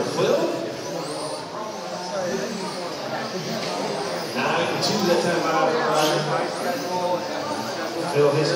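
Electric RC touring cars with brushless motors racing on a carpet track: high-pitched motor whines that rise and fall over and over as the cars accelerate and pass, with voices in the background.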